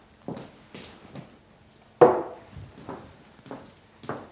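A person moving about and handling a vinyl LP record as it is put away: footsteps and light knocks and rustles, with one sharper knock about two seconds in.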